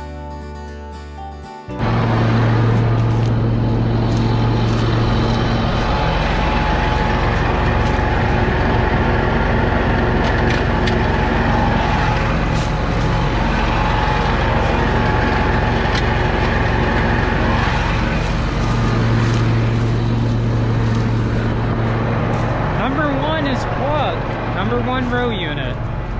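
Music ends abruptly about two seconds in, giving way to a John Deere tractor's diesel engine running steadily with a deep hum. A voice comes in over the engine near the end.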